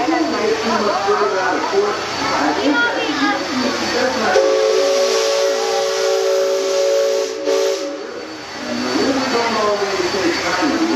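Riverboat steam whistle blowing one long, steady blast of several notes sounding together, with a hiss of steam over it. It starts a little before halfway through and lasts about three and a half seconds, with people talking before and after it.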